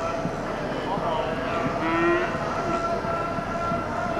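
Cattle-pen sound with a steady hum throughout, and a short call from one of the Texas Longhorn cattle about two seconds in.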